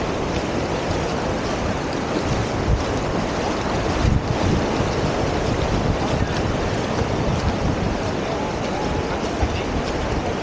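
Surf washing onto a sandy beach, a steady rush of breaking and receding waves, with wind buffeting the microphone in low, uneven gusts. There is a brief louder gust about four seconds in.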